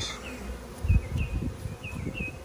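Honey bees buzzing around an opened hive, a faint steady hum, with a low thump about a second in.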